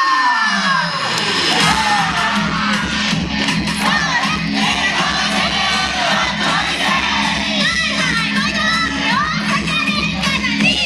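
A yosakoi dance team shouting calls together over loud, recorded performance music. The music opens with a falling sweep, then settles into a steady low bass under the massed voices.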